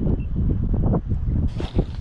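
Wind buffeting the microphone: a loud, uneven low rumble that comes in gusts, with a hiss rising near the end.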